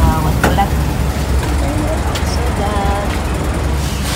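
Steady low rumble around a semi truck being fuelled at a diesel pump, with faint voices in the background; the rumble drops away near the end.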